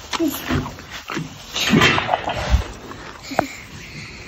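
White Welsh pony making animal sounds close to the microphone, in a few short noisy bursts; the loudest comes a little under two seconds in.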